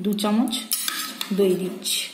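A glass bowl clinking and scraping against a stainless-steel bowl as thick curd is emptied into it. There is a sharp clink about three-quarters of a second in and another near the end.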